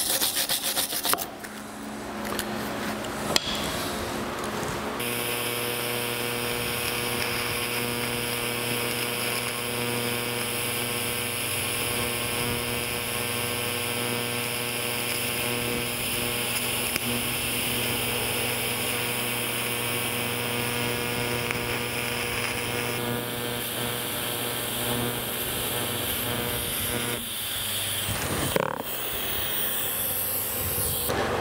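A wire brush scrubbing a bronze braze bead on cast iron at the start. Then, from about five seconds in, a TIG torch arc brazing a crack in a cast iron vise casting with bronze filler makes a steady buzz with a hiss for about twenty seconds, before stopping near the end.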